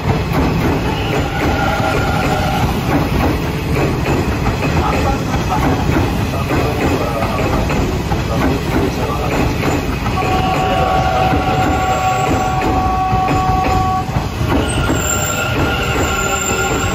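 A 10-car Hanshin electric train runs slowly into the platform, its wheels rumbling and clattering over the rails. High steady wheel squeals sound on and off, the longest from about ten to fourteen seconds in.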